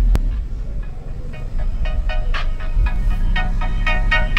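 Music played loud through a car audio system, carried by heavy, steady deep bass from four Skar ZVX 15-inch subwoofers in a sixth-order enclosure. A sharp click comes right at the start, and higher melodic parts come in after about a second.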